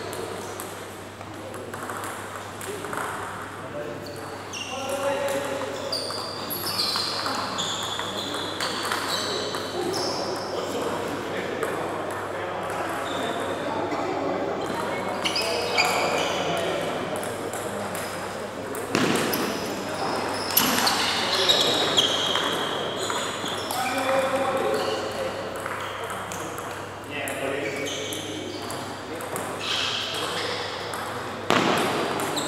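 Table tennis rallies: the ball clicks sharply off the paddles and the table in quick back-and-forth exchanges, with pauses between points. Voices carry in the large hall.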